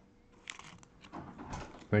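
A few light clicks and scrapes of plastic-sleeved trading cards being handled and slid across a table, with a voice starting right at the end.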